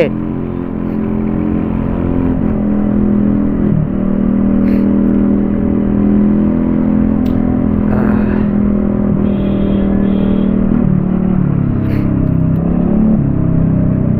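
Small scooter engine running steadily while riding at around 35–45 km/h, its hum shifting in pitch a few times as speed changes, over a low rumble of wind and road noise.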